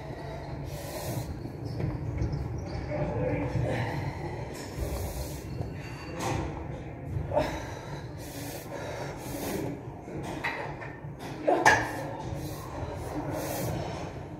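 A person breathing hard through an ab exercise, with short forceful exhales about once a second over a steady low room hum.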